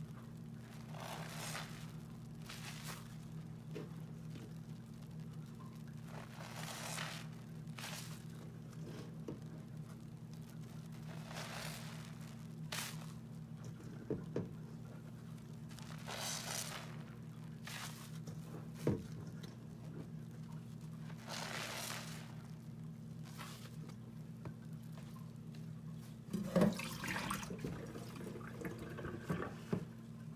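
Soap-soaked sponges being squeezed in thick suds: short wet squishing, fizzing bursts every couple of seconds, with a few sharp clicks, the loudest near the end, over a steady low hum.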